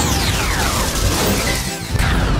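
Children's background music with a cartoon sound effect laid over it: a glide falling steeply in pitch over about a second, then a sudden crash-like hit at the very end.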